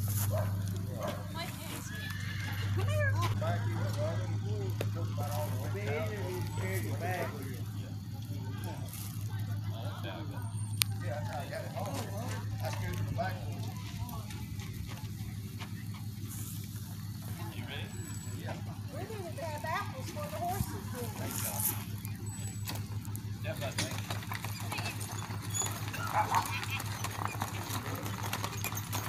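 People talking and laughing around a pair of harnessed ponies, with hooves clopping on gravel.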